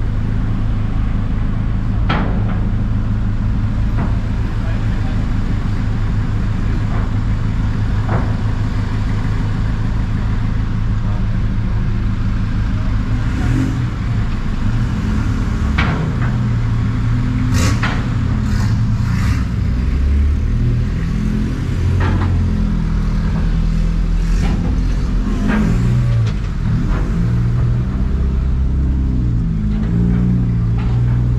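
Vehicle engine heard from inside the cab: a steady low drone, then from about halfway an uneven, shifting engine note as the vehicle pulls away and drives onto sand, with scattered knocks and rattles.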